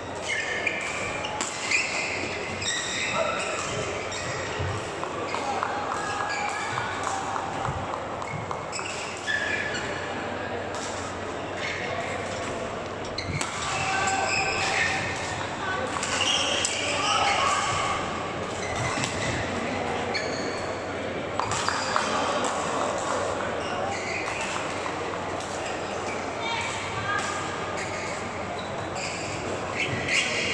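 Badminton hall ambience during doubles play: shoes squeaking on the court mats and rackets striking shuttlecocks, over a steady murmur of voices echoing in the large hall.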